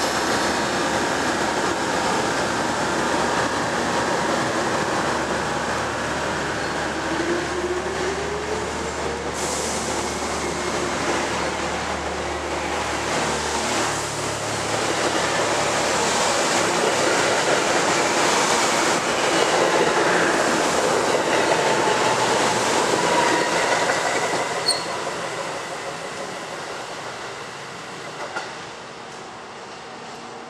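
Metro-North electric multiple-unit commuter train pulling out of the station: a rising whine about eight seconds in as it starts to move, then the cars passing close with wheel and rail noise growing louder, fading over the last few seconds as the train leaves.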